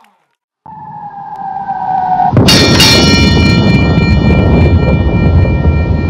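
Logo-sting sound effect: a falling tone over a swelling rumble builds for about two seconds, then a loud metallic clang hits and keeps ringing with several steady high tones over a deep rumble that slowly fades.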